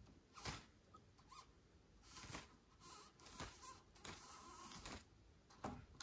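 Near silence, with a few faint clicks and light scraping as a hex key turns a small screw out of a plastic protective ring on an e-scooter's steering column.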